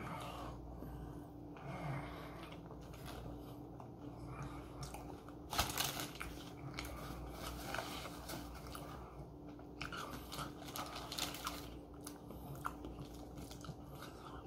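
A person chewing a mouthful of Subway turkey wrap (soft tortilla with turkey, lettuce and vegetables), with soft chewing and a few crunches. The sound is faint, over a low steady hum.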